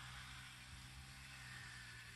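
Near silence: faint steady background hiss with a low hum.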